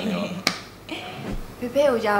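Interview speech with one sharp click about half a second in.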